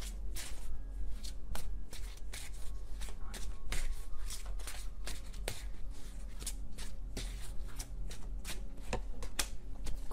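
A deck of tarot cards being shuffled by hand between draws: a continuous run of quick, irregular papery card clicks, with a few sharper snaps among them.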